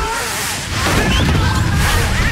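Action-film soundtrack: loud music mixed with a dense, noisy rumble of crashing action sound effects.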